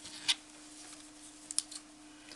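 Light clicks and rustles of jute twine being handled by hand, with the sharpest click about a third of a second in and a few lighter ones about a second and a half in, over a faint steady hum.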